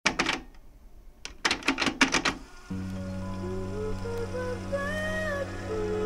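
Opening of a 90s boom-bap hip-hop instrumental: about two and a half seconds of irregular clacking clicks, then a held low bass note and chord enter suddenly with a gliding lead melody above them, without drums.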